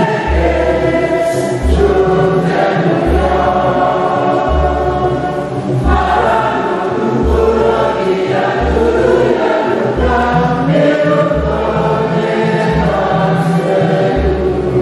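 Gospel singing with a group of voices over a band, with a deep bass note repeating steadily about every one and a half seconds.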